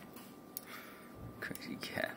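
A few soft swishes of broom bristles brushing over a hardwood floor and a cat's fur, short and faint, about a second apart.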